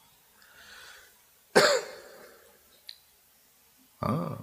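A man coughs once, short and sharp, into a close microphone about one and a half seconds in, after a soft intake of breath. A small click follows a little over a second later.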